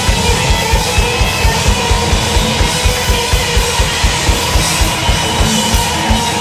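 Rock band playing, with electric guitars and a drum kit. The drums keep a steady, driving beat throughout.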